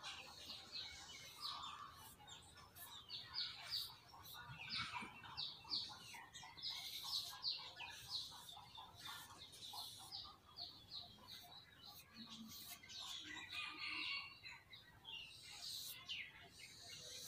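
Small birds chirping repeatedly: quick, high, slightly falling chirps that come in runs.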